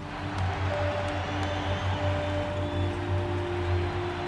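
Background music of a documentary score: long held notes over a steady low drone, with no clear beat.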